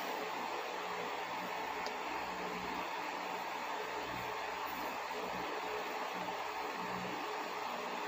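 Steady hiss of room noise with a faint low hum underneath, unchanging throughout.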